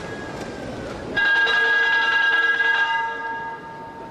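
A loud signal sounds across the shipyard, a steady tone with several pitches at once. It starts suddenly about a second in, holds for about two seconds and then fades away.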